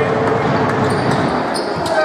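Sound of a basketball game in progress in a sports hall: a steady wash of crowd voices, with a few short sharp sounds from play on the court, such as ball bounces and shoe squeaks.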